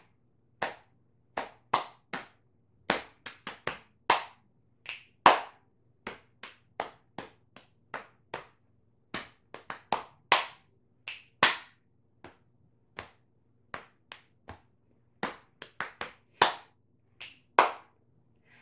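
Body percussion for a children's song: a rhythmic pattern of sharp hand claps and pats on the lap. The strikes come in short groups with brief pauses between them.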